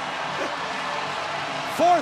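Baseball stadium crowd cheering as one steady wash of noise; a man laughs near the end.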